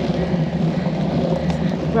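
Steady wind and road rumble picked up by a bicycle-mounted camera's microphone as the bike climbs slowly.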